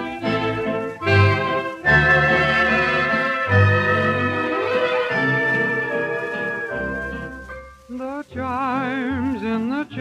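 A 1933 dance-orchestra fox trot playing from a 78 rpm record: the band holds long sustained chords, then about eight seconds in a male vocalist begins the vocal refrain, singing with a wide vibrato.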